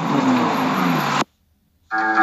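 Car on the move, engine and road noise heard from inside the cabin. It cuts off suddenly just over a second in, followed by a short silence, and music with guitar starts near the end.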